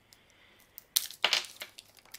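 Plastic shrink-wrap on a pack of AAA batteries being torn open and crinkled off by hand. The first second is quiet, then a few short rustles come from about a second in.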